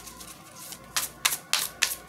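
A Hoodoo Tarot deck being shuffled by hand: quiet card rustle, then a quick run of crisp card snaps in the second half.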